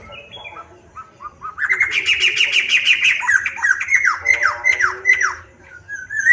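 Black-throated laughingthrush singing: a few short notes, then about a second and a half in a fast run of repeated notes, followed by slower, downward-slurred whistles that stop near the end.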